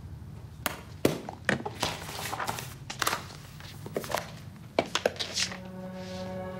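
Binders and papers being handled on a desk: a series of sharp knocks and thunks with rustling in between. Music with a low held note comes in near the end.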